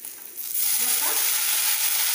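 Chopped spinach leaves tipped into a hot kadai of tempering, setting off a loud frying sizzle that starts suddenly about half a second in and then holds steady.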